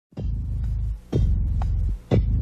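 Deep electronic throbbing pulses, about one a second, each beginning with a sharp attack and holding a low drone for most of a second: part of a synthesizer score.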